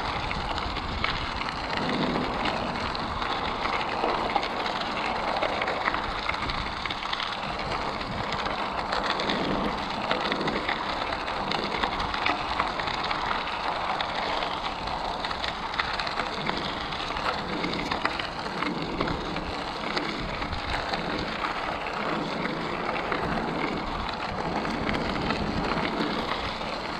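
Bicycle tyres rolling over a gravel trail: a steady crunching hiss, with low wind rumble on the microphone.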